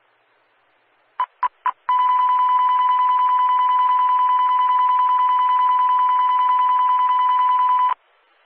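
NOAA Weather Radio warning alert tone, a single high steady beep: three short beeps, then one long tone of about six seconds that cuts off suddenly.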